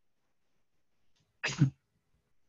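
Near silence, then about one and a half seconds in, a single short nonverbal vocal outburst from a man in two quick pulses.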